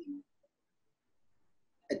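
Dead silence on a video call, broken at the start by a brief, low vocal sound of about a fifth of a second, with a man starting to speak right at the end.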